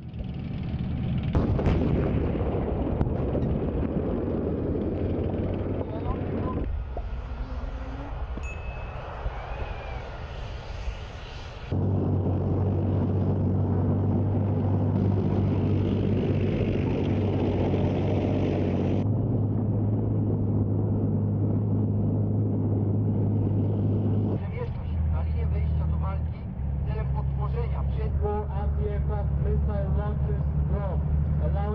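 Tracked armoured vehicles' engines running as they drive: a low steady drone that changes abruptly with each cut between clips. A voice comes in over it near the end.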